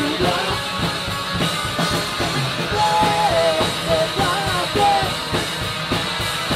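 Rock band playing live with electric guitar and drum kit, and no bass; a voice sings over it in short phrases.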